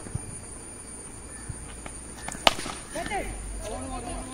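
A single sharp crack of a cricket bat striking a tennis ball about two and a half seconds in, followed by faint distant voices.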